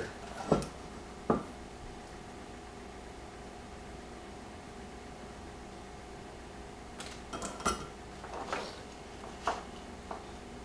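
Sharp metallic clicks as a soldering iron is lifted from its metal stand, then a quiet stretch of soldering with only a faint steady hum, then a cluster of clinks and rattles near the end as the iron is set back in its stand among the wires.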